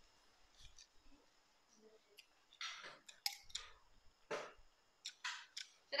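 Quiet eating sounds: a metal spoon and fork clicking against a ceramic bowl of noodle soup, with a few short slurps as noodles are eaten, mostly in the second half.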